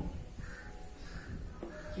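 Cloth wiping marker off a whiteboard, a few short rubbing strokes in quick succession.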